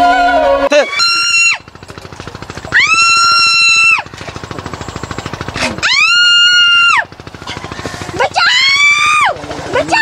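A voice letting out four long, high-pitched wordless wails, each about a second long, rising at the start and sliding down at the end, with a softer rapid pulsing sound in the gaps between them. Sitar-like background music cuts off just before the first wail.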